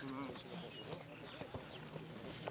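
Football boots tapping balls and stepping on artificial turf in a close dribbling drill: light, irregular taps.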